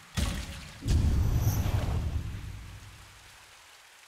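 Cinematic transition sound effect: a short rush just after the start, then a deep boom about a second in whose rumble slowly fades away over the next three seconds.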